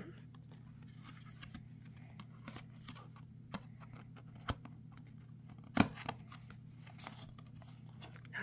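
Paperboard craft-kit pieces being handled and pressed together as tabs are poked into slots: light scraping and crinkling with a few sharp clicks, the loudest about six seconds in, over a faint low hum.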